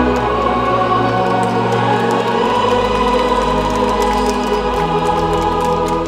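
Choral music: voices singing long held chords, the low notes shifting twice.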